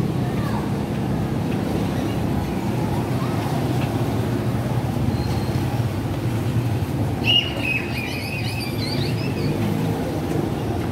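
Steady street traffic noise, with a brief high-pitched wavering squeal about seven seconds in.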